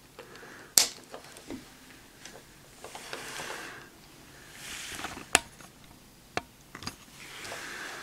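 Plastic parts of a toy figure being clipped together and handled: several sharp clicks, the loudest about a second in, with soft rustling of hands on the plastic in between.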